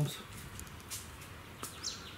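Quiet outdoor background with one short, high bird chirp near the end.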